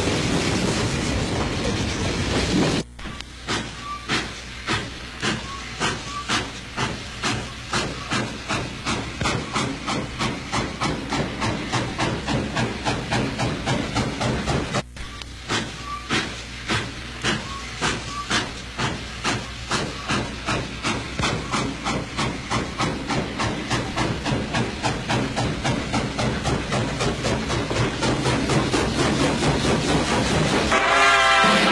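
Steam locomotive letting off a steady hiss of steam, then chuffing as it pulls away. The exhaust beats start at about one and a half a second and quicken to about three a second. About fifteen seconds in, the chuffing breaks off and starts again slowly, quickening again.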